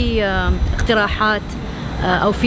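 A woman speaking, with a steady low rumble of traffic underneath.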